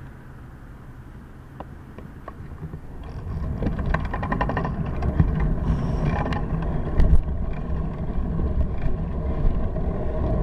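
Bicycle setting off from a stop: a few sharp clicks, then about three seconds in a louder rumble of wind on the handlebar camera's microphone and road noise with rattles as it picks up speed.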